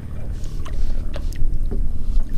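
Small splashes and water lapping at the side of a boat as a hand holds a bass in the lake water before releasing it, over a steady low rumble.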